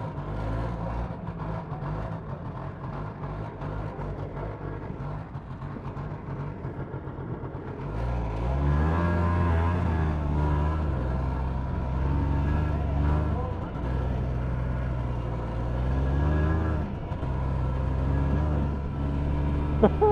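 A 1987 Yamaha Inviter snowmobile's two-stroke engine idles just after starting, then about eight seconds in it revs up and pulls away, its pitch falling and climbing again as the rider works the throttle. The rider suspects a wiring fault and a bad spark plug in this engine.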